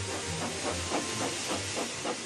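Steam locomotive sound effect: a loud hiss of escaping steam with quick rhythmic puffs, about four or five a second.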